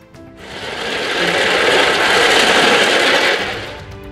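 Rotating drum ball mill grinding ore, a dense grinding noise that swells in over the first second and fades away near the end, with music faintly underneath.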